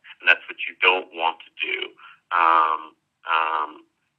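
Speech only: a man talking, in narrow-band audio with little above about 4 kHz, like a phone line.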